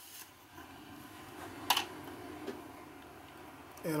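A watercolour brush rubbing faintly on paper, with one sharp tap a little before halfway and a lighter tap soon after.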